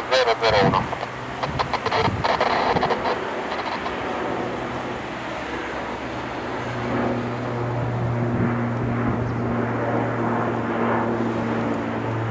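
Boeing 777 taxiing with its jet engines at idle: a steady low hum that comes in about halfway through and builds slightly.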